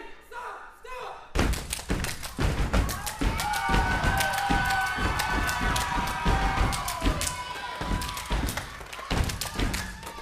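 Step team stepping: rapid, rhythmic foot stomps and hand claps or body slaps on a stage floor, starting about a second in. Several voices call out or cheer over the stepping through the middle of it.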